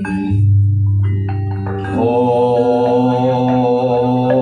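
Javanese gamelan playing. A deep tone rings out just after the start, with struck metal keyed and pot-gong notes. About halfway through, a held, slightly wavering pitched line joins and carries on to the end.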